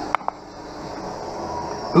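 Benchtop optical lens edger running steadily as it cuts a polycarbonate prescription lens, near the end of its cutting cycle, with a faint whine rising slightly near the end. Two short clicks sound just after the start.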